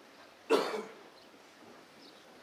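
A person coughing once, a short sharp cough about half a second in.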